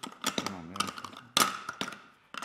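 Plastic puzzle pieces clicking and knocking against a toy truck's clear plastic bin as they are pressed into place, with one sharper knock a little past halfway.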